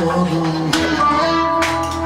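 A small live ensemble playing Constantinopolitan-style instrumental music: clarinet and violin carrying gliding melody lines over plucked strings and a plucked double bass.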